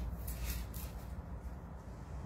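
Paper pages of a music book being turned on a keyboard's music stand: a few quick rustles in the first second, over a low steady hum.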